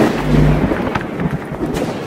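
Cinematic logo-intro sound effect: a deep rumbling boom with scattered crackles, fading out steadily.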